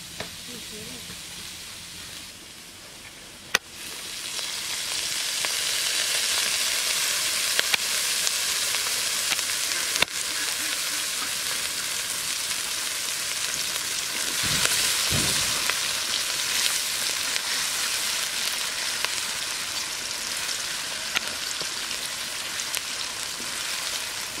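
Chopped onions frying in oil in a large metal wok, a steady sizzle that grows louder about four seconds in, with a couple of sharp clicks.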